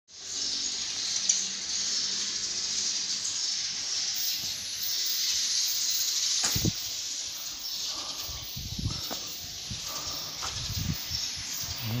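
A steady high-pitched hiss that eases off a little past halfway, with a few soft low thumps in the second half.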